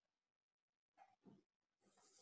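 Near silence on a video-call line, with a couple of very faint, brief sounds about a second in.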